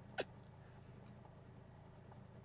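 A single short, sharp click just after the start, then only a faint steady low hum of room tone.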